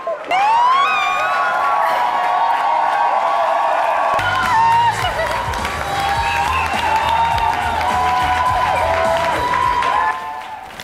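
A crowd cheering and whooping, with high rising shrieks over a dense mass of voices. About four seconds in, music with a heavy bass beat starts and plays under the cheering.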